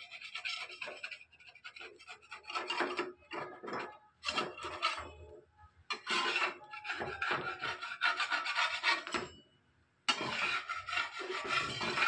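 Wooden spatula scraping repeatedly against a clay dosa tava as it is worked under the edge of a dosa to loosen it. The scrapes come in rasping bursts, with a short pause near the end.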